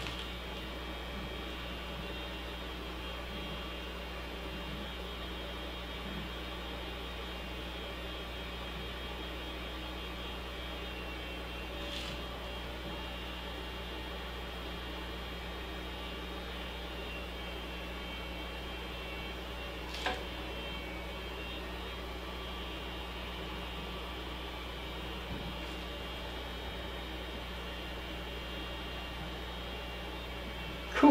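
Hot air rework gun blowing steadily as it shrinks heat-shrink tubing over wiring, with one short click about two-thirds of the way through.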